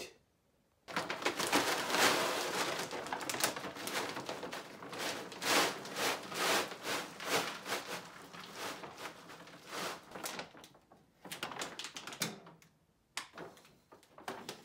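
Dry dog kibble pouring from a large bag into a Simplehuman pet food container: a dense rattling clatter of pellets that starts about a second in, thins out and gives way to a few scattered rattles near the end.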